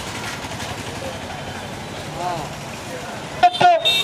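Steady street traffic noise, an even background rumble of passing vehicles, with a brief faint pitched tone like a horn about two seconds in.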